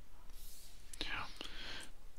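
A man whispering or muttering under his breath, breathy and without full voice, with a few faint keyboard clicks as he edits code.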